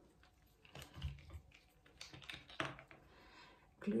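Faint scattered clicks and light knocks of hands handling a plastic wood-glue tube and a wooden trim strip over a wooden table top.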